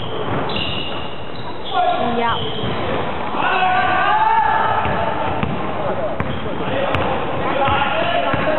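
Basketball game on a wooden indoor court: a ball being dribbled, short thuds on the floor throughout, with brief high squeaks near the start and players' voices calling out in the middle, in a large reverberant hall.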